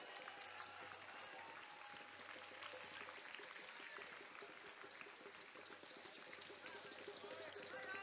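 Near silence: faint outdoor street ambience with distant voices.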